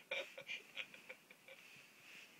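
A person's faint, breathy laughter tailing off, in short wheezy bursts that fade away over the first second and a half.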